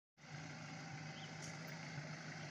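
Pickup truck engine running steadily as the truck drives slowly over dirt ground, a faint, even hum that starts a moment in.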